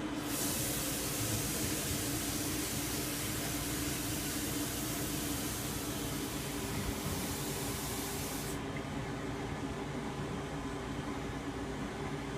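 Water running hard from a kitchen tap in a steady hissing rush, shut off abruptly about eight and a half seconds in.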